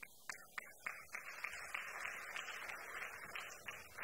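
Audience applauding: a few separate claps at first, then steady applause from about a second in that dies away just before the end.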